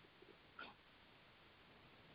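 Near silence, with one faint short sound a little after half a second in.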